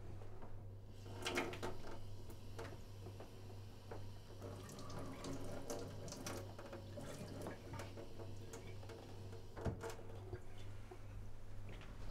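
Kitchen mixer tap running a thin trickle of water into a stainless steel sink, with a few sharp clicks and knocks from the tap handle and sink.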